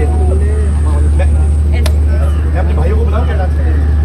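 A steady low engine rumble under faint chatter of voices, with one sharp click a little before two seconds in.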